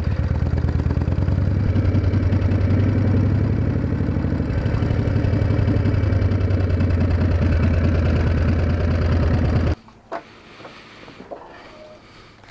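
1979 Harley-Davidson FXS Shovelhead's 80-cubic-inch V-twin running steadily at low speed, then stopping suddenly about ten seconds in.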